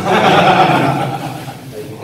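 A group of men bursting into laughter together, loud at first and fading over about a second and a half.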